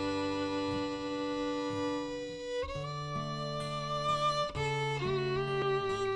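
Fiddle playing a slow, ballad-like air in long held notes, over acoustic guitar holding low chords underneath. The melody moves to a new note about three seconds in and again near the end.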